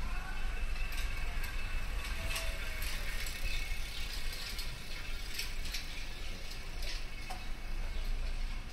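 Footsteps on a paved street at a walking pace over a steady low city hum, with the rattle of a bicycle riding along the street.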